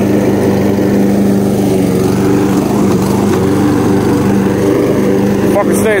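Walk-behind lawn mower's small gasoline engine running steadily under load while it mows grass. The engine has just been repaired and keeps an even pitch throughout.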